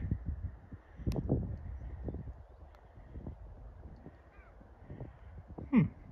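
A bird's short, harsh, caw-like calls, several in a cluster about a second in, with a faint chirp later, over a steady low rumble.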